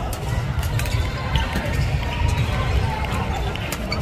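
Large indoor sports hall between rallies: a few scattered sharp hits from badminton play on the other courts, over a steady low hall rumble and distant voices.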